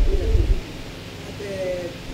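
A soft, low voice murmuring or humming. Low thumps come in the first half second.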